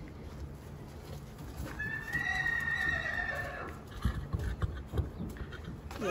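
Newborn Arabian colt foal whinnying: one high call of nearly two seconds, starting about two seconds in and falling slightly in pitch. A few soft hoof thuds on the ground follow.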